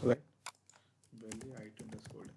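Typing on a computer keyboard: one keystroke about half a second in, then a quick run of keystrokes from about a second in.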